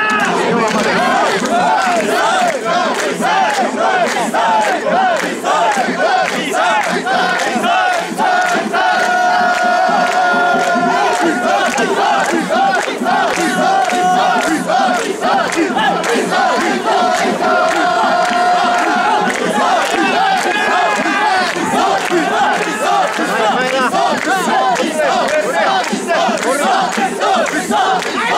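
Dozens of mikoshi bearers shouting their carrying call over and over while shouldering the portable shrine, many voices overlapping in a quick repeated rhythm, with a few longer drawn-out calls in between.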